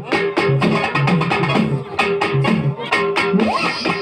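Live folk dance music: a fast, even drum beat under an electronic keyboard playing a held melody and a stepping bass line.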